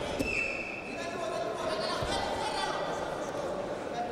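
Wrestlers scuffling and thudding on the mat, with dull knocks near the start and again about two seconds in, over voices echoing in a large hall. A short high steady tone sounds for under a second just after the start.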